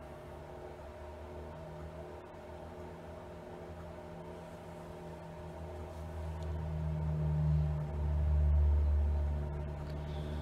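Steady low hum of room background noise, with a deeper rumble that swells up and fades away again about seven to nine seconds in.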